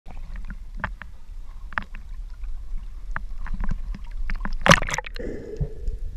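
Seawater lapping and splashing against an action camera held at the surface, with scattered small splashes. About five seconds in, a loud splash as the camera goes underwater, and the sound turns muffled with a faint steady hum.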